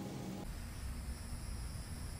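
Quiet outdoor background: a steady low rumble, with faint high steady tones joining about half a second in.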